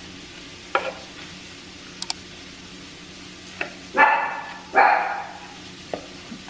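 A dog barking twice, short and loud, near the end, after a single softer bark about a second in; a sharp double click of utensils sounds about two seconds in.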